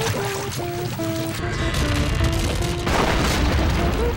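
Cartoon score playing a melody of short held notes over a low, rushing flood sound effect, with a swell of noise about three seconds in.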